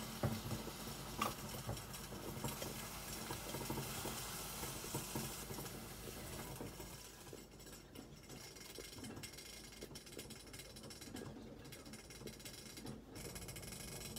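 Quiet kitchen handling sounds: small clicks and taps as food is laid onto ceramic plates with metal tongs, over a faint hiss that fades about halfway through.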